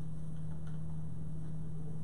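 A steady low electrical hum, one unchanging tone over a faint background hiss.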